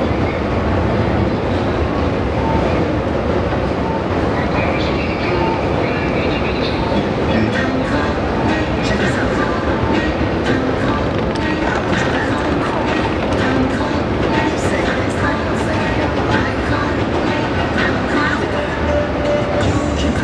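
Steady, loud city street din: a continuous rumble of traffic and rail noise with voices of passersby mixed in.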